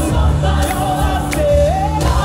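Live choir music: a lead singer on a microphone sings over a choir and steady bass accompaniment. Near the end the lead voice slides up in pitch.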